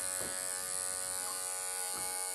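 Electric pet grooming clipper running with a steady, even buzz as its blade is worked over a puppy's coat.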